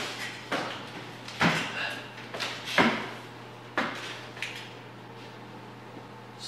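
A removed truck door being set down on a metal stand: a series of about six metallic clanks and knocks over a few seconds, each ringing briefly.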